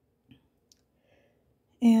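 Mostly quiet, with two faint short clicks in the first second, then a woman's voice begins near the end.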